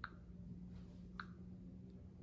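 Two light clicks about a second apart, fingers tapping and handling a smartphone touchscreen, over a faint steady low hum.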